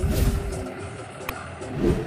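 John Deere 5050E tractor's diesel engine running as the tractor drives along a field track, swelling louder near the start and again near the end.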